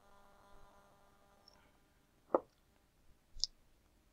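Two faint, brief clicks in a quiet room: a low knock a little over two seconds in and a short high tick about a second later, over a faint steady hum in the first second and a half.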